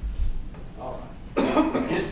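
A person coughing once, loudly, about a second and a half in, after a dull low thump at the start.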